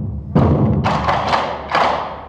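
Taiko drums struck with bachi: a deep, ringing drum hit about a third of a second in, then a quick run of about four sharper, brighter strikes.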